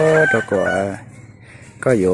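A man's voice drawing out one long, level-pitched syllable, then a shorter one, followed by a pause of about a second before talking resumes.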